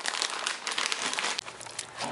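Plastic Ziploc bag crinkling and rustling as a floured trout is handled inside it, with many small crackles; the rustling thins out over the last half second.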